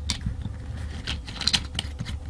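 Small metallic clicks and taps from a long steel through-bolt being slid into and seated in a Denso starter motor's housing, several irregular ticks over two seconds.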